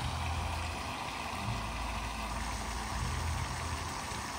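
Small garden-pond fountain splashing steadily, with a low rumble underneath that swells and fades.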